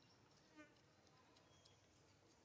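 Near silence: faint outdoor ambience with a brief soft chirp about half a second in.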